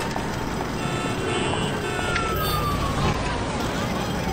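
Busy city street noise: a dense wash of traffic and street bustle with scattered clicks and knocks. A single falling tone, like a passing siren, glides down for about two seconds near the middle.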